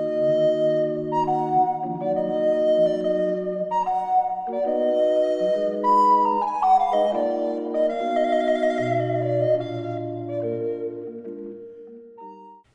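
Recorder with basso continuo playing a slow Baroque sonata movement: a sustained melody over held bass notes, with a trill ornament in the melody. The music fades out near the end.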